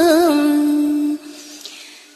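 A voice chanting Vietnamese verse holds the last syllable of a line as one long steady note, with a brief waver at the start. It drops away about a second in, leaving a faint fading tail.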